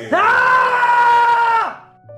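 A man's long, loud scream at one held pitch, lasting about a second and a half before fading out.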